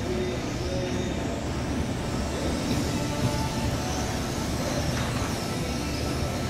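High-pitched whine of 1/12-scale RC cars with 13.5-turn brushless electric motors running laps, rising and falling as they accelerate and brake, over a steady hall noise.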